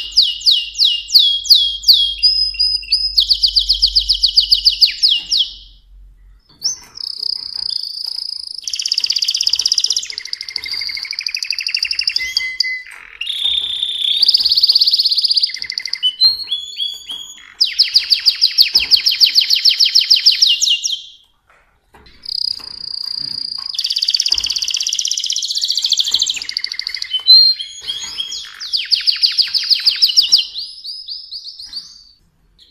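Mosaic canary (a colour-bred domestic canary) singing: long phrases of fast trills and rolling, repeated high notes, with two brief pauses, about six seconds in and just after twenty seconds.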